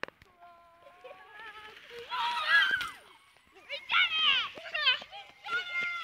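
Young children's high-pitched voices calling and shouting in short bursts, with a click at the very start.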